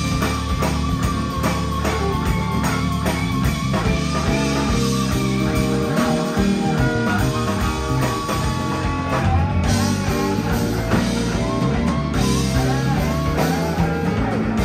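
Live electric blues band playing an instrumental passage: an electric guitar lead with bent, wavering notes over keyboard, bass and drums.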